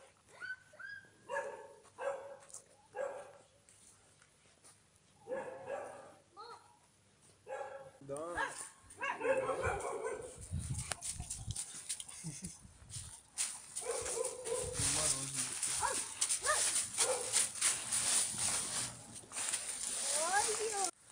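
A young American pit bull terrier gives short barks and whines in separate bursts. Then, from about eight seconds in, there is continuous rustling of dry leaves as the dog roots through them close by.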